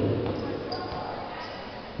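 Basketball dribbled on a gym court, with background voices in the hall.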